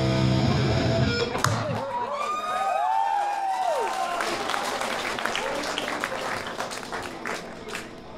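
A hardcore punk band's distorted guitars and drums ring out on a final chord, which stops about two seconds in. Crowd whoops and scattered clapping follow.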